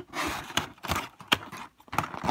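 Tape being peeled off a cardboard box and the cardboard handled: short scratchy rasps with a few sharp clicks.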